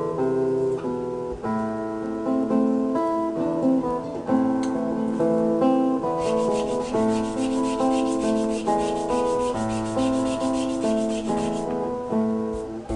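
Acoustic guitar music throughout. From about six seconds in, rapid, even rasping strokes of a handmade wooden kazoo being sanded by hand in a bench vise join it.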